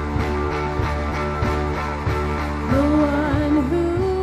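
Live worship band playing a song on electric guitars and drum kit, with a woman's lead vocal coming in about two-thirds of the way through.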